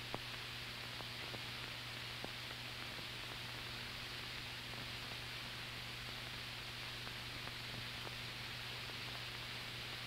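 Steady hiss with a low hum and a few faint clicks: the background noise of an old film soundtrack, with no narration or music.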